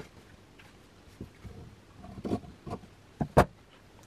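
Scissors cutting silk fabric strips: a few short snips and knocks spaced out over the seconds, the loudest two close together just before the end.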